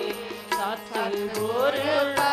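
Gurbani keertan: a woman singing a hymn to the held chords of a harmonium, with strokes on a pair of hand drums. The music dips in the first second, then swells again toward the end.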